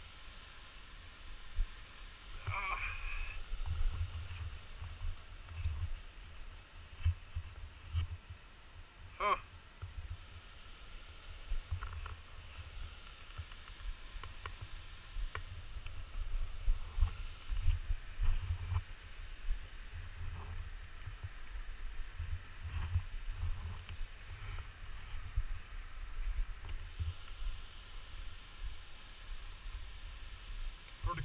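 Wind rumbling on the camera microphone in uneven gusts, with a few brief faint sounds over it.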